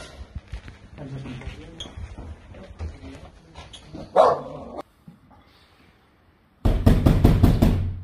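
Heavy, rapid pounding on a door, several blows a second, starting sharply near the end after a short silence: police demanding entry in a raid. Before it come lighter knocks and scuffling, with one loud sharp sound about four seconds in.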